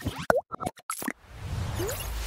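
Logo-animation sound effects: a quick run of short clicks and plops with a springy pitch glide in the first second, then a swelling whoosh with a low rumble as the logo lands.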